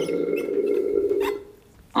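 A man's long, drawn-out hesitation sound ("euh") held at a steady pitch for about a second and a half, then a short silence.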